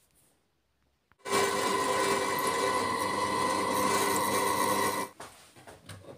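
An electric drill runs steadily, drilling the second dowel-pin hole through an aluminium adapter plate. It starts about a second in and stops about five seconds in.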